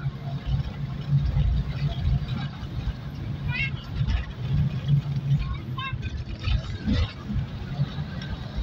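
A vehicle's engine running with a continuous low, uneven rumble, with brief faint voices over it now and then.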